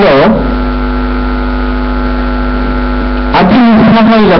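Loud, steady electrical mains hum, a buzz with many evenly spaced overtones, fills a pause in a man's speech. His voice breaks off just after the start and comes back near the end.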